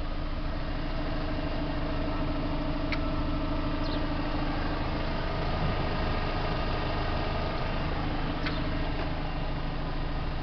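A Vauxhall Astra convertible's engine idling steadily, a smooth even hum. A few faint clicks sit on top.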